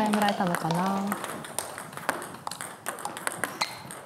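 Table tennis balls clicking off bats and the table in quick, irregular succession during practice rallies, after a brief voice in the first second.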